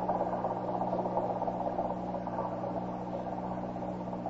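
Radio-drama sound effect of a motorboat engine running steadily, easing off slightly toward the end, heard over the old recording's constant low hum.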